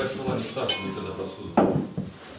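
Metal pots, bowls and spoons clattering and clinking as food is served out, with one loud clank about one and a half seconds in.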